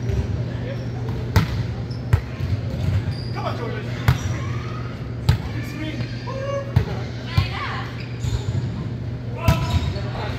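Balls thudding on a hardwood gym floor and being struck by hands, about seven sharp knocks at irregular spacing, each echoing in a large hall, over a steady low hum.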